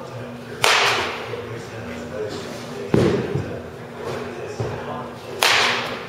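Baseball bat swung hard through the air: two sharp swishes about five seconds apart, with a duller thud between them.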